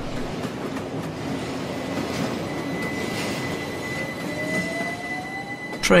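Class 357 electric multiple-unit train at a station platform: a steady rumble and hiss, with a thin high steady tone from about two seconds in. Near the end a motor whine rises in pitch.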